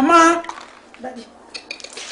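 A voice briefly at the start, then a few light clinks and taps of a metal drinking cup being handled.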